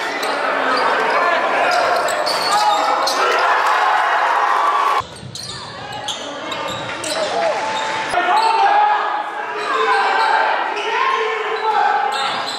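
Live gym audio of a basketball game: voices of players and spectators echoing in the hall, with a basketball bouncing on the hardwood. About five seconds in, the sound cuts abruptly and drops in level as a new game clip begins.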